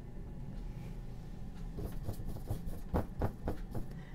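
Flat paintbrush scrubbing oil paint onto a painting panel: a quick run of short brush strokes in the second half, over a low steady hum.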